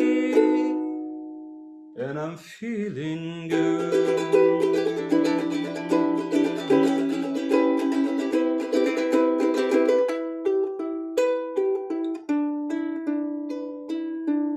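Ukulele strummed: a chord rings out and fades about a second in, then after a short break the strumming starts again, giving way to more separate picked notes about ten seconds in.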